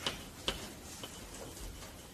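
A few light, sharp clicks in a quiet room: one at the start, one about half a second in, and a fainter one about a second in.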